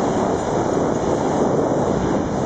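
Steady rushing noise of wind over the microphone of a camera carried by a skier moving downhill, mixed with the hiss of skis sliding on groomed snow.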